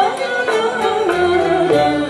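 An Arab-Andalusian ensemble performing: voices singing a melody that steps from note to note, with ouds, violins, mandolins and a qanun playing along.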